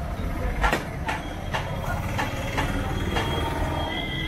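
Heavy meat cleaver chopping meat on a wooden log chopping block, repeated sharp chops about two a second.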